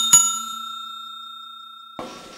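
Notification-bell sound effect from a subscribe-button animation: a bell struck twice in quick succession, ringing on with a slowly fading tone until it stops abruptly.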